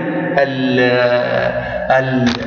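A man's voice drawing out one long vowel at an even, level pitch for over a second, a hesitation sound between spoken phrases.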